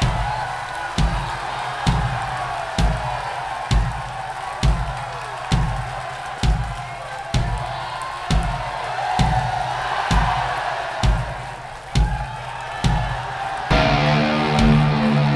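Concert crowd cheering over a bass drum beating slowly and steadily, a little faster than once a second. Electric guitar comes in right at the end.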